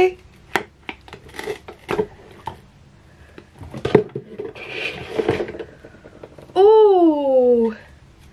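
Light clicks, taps and soft rubbery rustling as a cured epoxy resin disc is peeled out of a flexible silicone mould and handled. Near the end a woman gives one long, falling 'ooh'.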